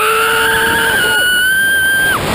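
Two riders on a slingshot ride screaming as it flings them up: a lower scream that breaks off about a second in, and a higher, shrill scream held steady to the end.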